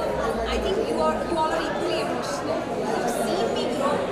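A woman speaking, with the chatter of other people's voices around her.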